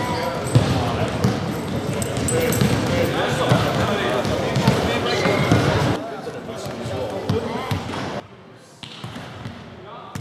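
Children's chatter in a large sports hall, mixed with the repeated smacks of volleyballs being hit and bouncing on the wooden floor. The sound drops lower about six seconds in, and again two seconds later.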